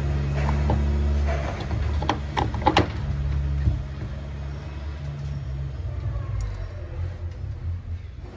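Steel gear case housing of a Harrington lever hoist being pushed and seated onto the hoist body, with a few sharp metal clicks and knocks about two to three seconds in. Under it runs a low, steady engine-like rumble that fades away over the second half.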